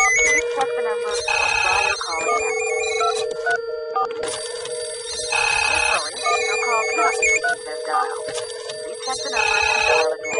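Electronic music laced with a mobile phone ringtone's warbling trill, over a steady held tone. A brighter phrase comes round about every four seconds.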